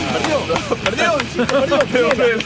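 Only speech: rapid, excited voices following a horse race as it is called.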